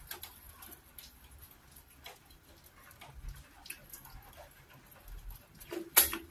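Close-miked wet, sticky squelches and small clicks of fingers pulling apart and pressing soft cocoyam fufu. Near the end comes a louder burst of mouth sounds as the morsel goes into the mouth.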